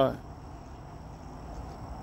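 Crickets trilling steadily at a high pitch over a low background rumble.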